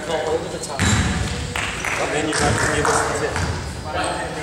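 Indistinct voices talking in a large, echoing gymnasium, louder and more crowded from about a second in.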